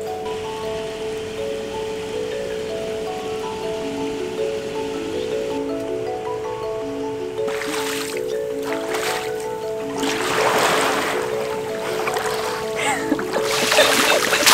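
Background music: a melody of short notes over a steady held note. From about halfway, water splashes in three bursts, the loudest near the end.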